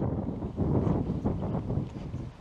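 Wind buffeting the microphone: a gusting low rumble that rises and falls.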